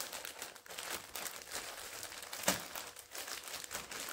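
Thin plastic courier mailer bag crinkling as it is handled and pulled open, in irregular small crackles with one louder crackle about two and a half seconds in.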